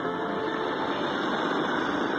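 Portable radio tuned to 828 kHz medium wave, giving a weak, noisy distant-station signal: steady static hiss with faint music from the stations sharing the frequency mixed underneath.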